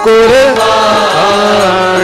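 Sikh devotional kirtan: a voice comes in loudly at the start with a long sung note that slides and wavers, over a steady harmonium drone.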